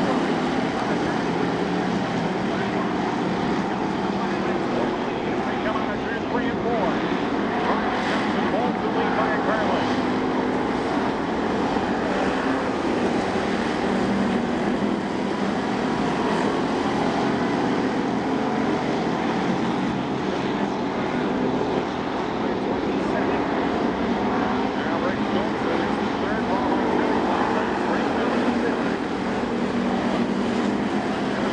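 A pack of WISSOTA Street Stock race cars at racing speed on a dirt oval, their V8 engines running together in a loud, steady din.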